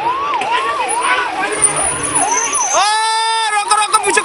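Emergency vehicle siren on a fast rising yelp, each sweep climbing and dropping about two to three times a second. About three seconds in, a steady horn-like tone cuts in for under a second before the yelp resumes.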